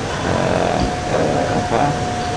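A pause in speech filled by steady room noise, with a single steady high-pitched tone that begins under a second in and holds.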